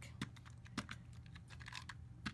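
A few faint, sharp clicks and light handling sounds of small paper pieces and a plastic tape-runner adhesive dispenser being picked up and readied to tape down a die-cut paper shape.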